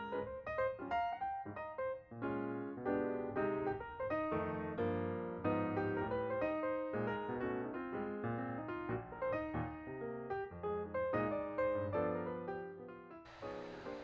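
Background piano music: a steady stream of quick notes over a lower bass line.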